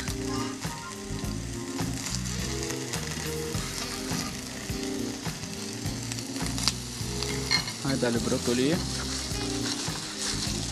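Food sizzling steadily in a hot frying pan on an induction hob, with a single sharp tap about two-thirds of the way through.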